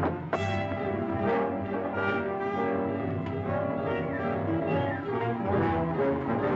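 Orchestral background score with brass prominent, playing without a break.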